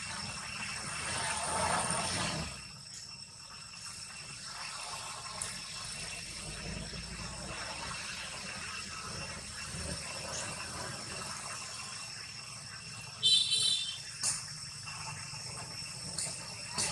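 Steady high-pitched insect drone. A broad swell of noise rises and fades in the first two or three seconds, and a brief loud high-pitched call comes about thirteen seconds in.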